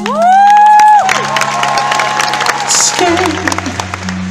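A high falsetto note sung into the microphone, rising and then held for about a second, over steady acoustic guitar chords. After it the audience cheers and sings along for a couple of seconds.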